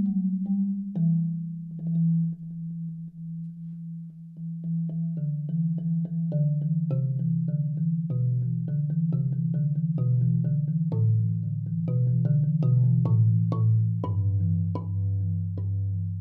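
Solo marimba played with soft mallets: a slow, mellow piece with rolled low notes under a melody. It grows fuller and louder after about four seconds as the bass line steps downward.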